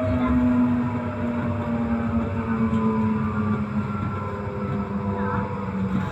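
Tram's electric traction motor whining steadily over the rumble of wheels on rails, heard from inside the car. The whine slowly falls in pitch as the tram eases off speed.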